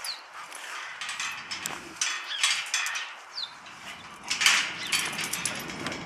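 A golden retriever puppy and two sheepdogs scuffling at a wrought-iron gate: irregular rattles, scrapes and clicks of paws and teeth on the steel bars, with a couple of brief high squeaks.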